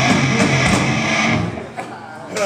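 Live rock band playing loud distorted electric guitar, bass and drums, the music cutting off abruptly about one and a half seconds in as the song ends.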